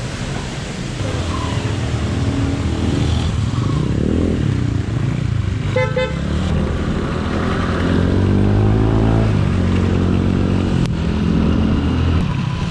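Motorcycle engine running as the bike pulls away and speeds up, its pitch rising for a few seconds in the middle. A short horn beep comes about six seconds in.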